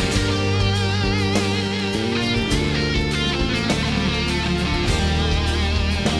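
A live rock band's instrumental section led by an electric guitar solo: held lead notes with wide vibrato, over sustained bass notes and drums.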